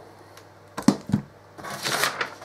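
A few short, sharp knocks as the instrument case's front and back panels are handled and knock against each other and the cardboard box, followed near the end by a rustle of the paper assembly-instruction sheet being lifted.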